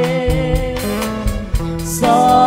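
Live band playing a slow ballad between sung lines: electric guitar, electronic keyboard and drum kit, the drums marking a steady beat, with a cymbal crash near the end.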